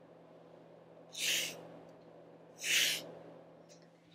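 Fingertips tracing the two strokes of a sandpaper letter X: two short, soft rasps about a second and a half apart.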